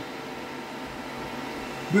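Steady hum and hiss of cooling fans and ventilation in a room full of running radio equipment, with a few faint steady tones in it.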